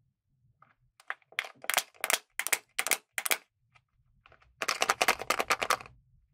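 Thin plastic surprise-toy container crinkling and crackling in the hands as its sealed film lid is peeled open: a string of sharp separate crackles, then a dense rapid crackle near the end.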